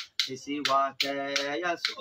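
A man singing a slow tune in held notes, over a steady beat of sharp finger snaps about two a second.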